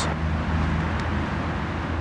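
Steady low rumble of road traffic, with a faint low engine hum underneath.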